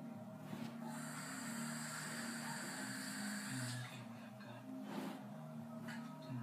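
A child breathing out a long hiss close to the microphone for nearly three seconds, then two short sharp breaths near the end, over steady background music.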